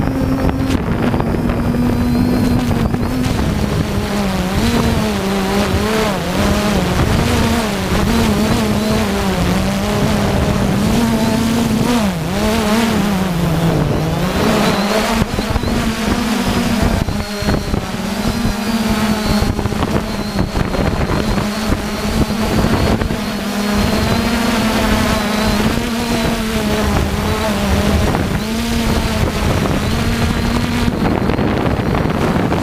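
3DR Iris+ quadcopter's electric motors and propellers buzzing close up as the drone descends, with wind noise on the microphone. The pitch wavers constantly as motor speed is adjusted, sagging lower about twelve to fourteen seconds in before coming back up.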